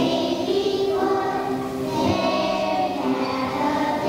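A children's choir singing together, holding each note for about a second before moving to the next.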